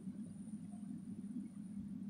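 Faint background noise: a steady low hum with a thin high-pitched whine above it.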